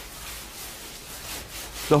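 Coarse sea salt being scooped and spread by gloved hands over raw legs of pork, a steady scraping noise without rhythm: the hand-salting stage of San Daniele ham curing.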